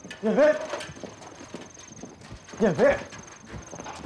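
A man calling a name out loud twice, 'Yanfei!', about a second and a half apart. A steady high chirring of crickets runs behind the calls.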